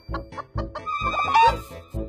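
Hen clucking, with a loud wavering squawk in the second half, over background music with a steady beat.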